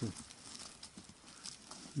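Faint, scattered footsteps and taps of trekking poles on a leaf-littered forest path.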